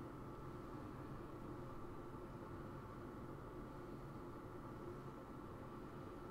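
Faint room tone: a low, steady hiss with a light hum and no distinct sounds.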